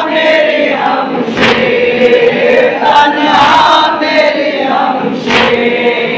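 Crowd of men chanting a nauha, a Muharram lament, together in a sustained sung melody, with a few sharp strikes cutting through every second or two.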